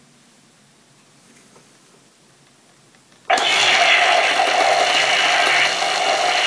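Quiet for about three seconds, then the Matty Collector Neutrino Wand prop toy's firing sound effect cuts in suddenly and loudly: a steady electronic blast from its speaker, running at half power, with the toy vibrating on the table.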